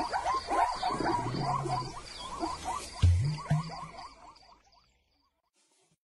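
Animated-film savanna soundscape: a chorus of rapid, repeated frog-like croaking calls over a faint high insect chirp that pulses a few times a second. A deep, loud low call about three seconds in is the loudest sound, and everything fades out to silence by about five seconds in.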